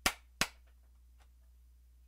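Two sharp clicks about half a second apart, the first with a short decay, followed by a faint steady low hum.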